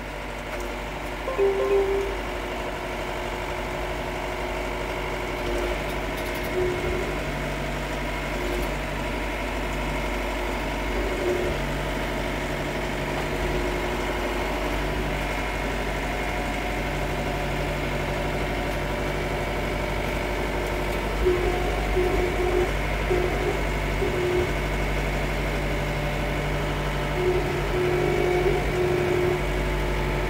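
Yanmar tractor's diesel engine running steadily at moderate revs, heard from inside the cab while driving.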